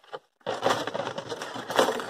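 Cardboard piston-ring box being handled and rummaged, a dense crackling rustle that starts about half a second in after a brief first rustle.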